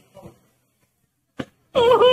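An elderly man wailing aloud in grief for his son: a loud, high-pitched, wavering cry that breaks out near the end, after a short burst a moment earlier.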